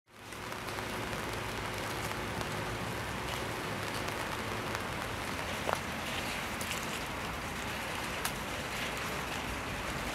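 Steady hiss of light rain falling outdoors, with two brief sharp clicks, one about halfway through and one near the end.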